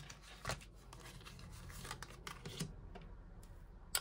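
Faint handling of Oracle Belline cards: a card drawn from the deck spread on the table and laid down on the wooden tabletop, with a light rub and a few soft clicks.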